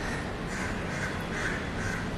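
A bird calling repeatedly, short calls about twice a second, over a steady low background hum.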